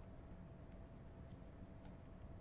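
Faint ticks and taps of a stylus tip on a tablet screen while handwriting, a quick cluster lasting about a second, over a low steady room hum.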